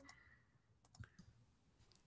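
Near silence, with a few faint clicks about a second in.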